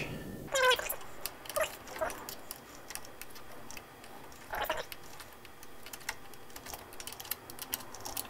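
Metal clinks and clicks of an 8 mm box-end wrench on the small nuts that clamp the blade in a thickness planer's cutter head, as the nuts are tightened. A handful of scattered clinks, a few near the start and more about halfway.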